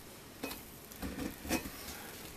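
A steel butcher knife cutting through a deep-dish pizza, its blade scraping and tapping against the cast-iron skillet underneath: three soft, short scrapes about half a second apart.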